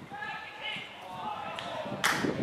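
Shouted calls from several football players and spectators, raised voices overlapping, with low thuds underneath.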